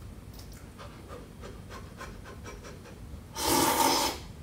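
Faint small clicks, then near the end a loud slurp of udon noodles lasting under a second.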